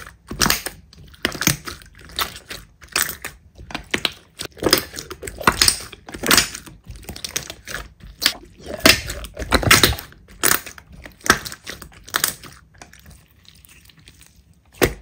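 Thick slime mixed with small foam beads being squeezed and kneaded by hand: repeated crunchy, crackling squelches about one or two a second as the hands press and fold it, thinning out near the end.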